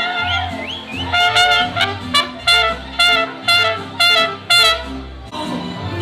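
Live mariachi band playing at close range, led by trumpets over a deep bass line. The trumpets play a run of short, loud accented notes about twice a second, then the band moves into longer held notes near the end.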